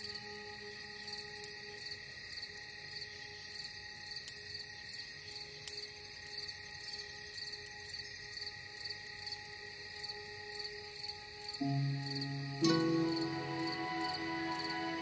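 Slow ambient music of long held tones over steady, evenly spaced cricket chirping. Near the end a new low chord comes in, followed by a louder struck note about a second later.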